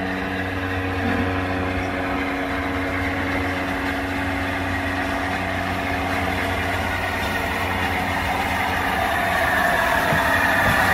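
LNER A4 steam locomotive No. 60009 'Union of South Africa' approaching with its train, the running noise growing louder toward the end. A steady low hum is heard in the first part and fades away.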